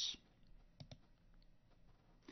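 A couple of faint computer-mouse clicks a little under a second in, against quiet room tone, with the end of a spoken word at the very start.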